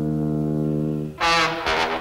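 Brass in a comedy film score: a low note held steady for about a second, then a louder, brighter brass note near the end.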